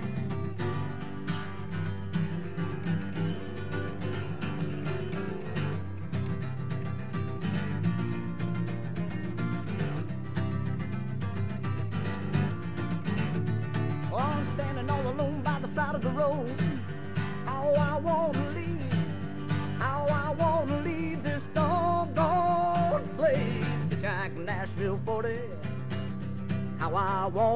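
Acoustic guitar strummed in a steady rhythm through an instrumental break in a live folk-blues song. About halfway through, a wavering, bending lead melody comes in above the strumming.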